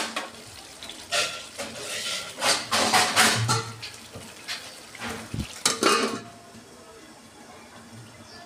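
Metal clatter of a steel lid being handled and set onto an aluminium kadai of cooking masala: several sharp clinks and clanks in the first six seconds, then quieter.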